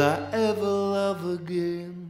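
The closing phrase of a slow blues song: a long held final note, sung, sliding slightly down in pitch and fading out near the end.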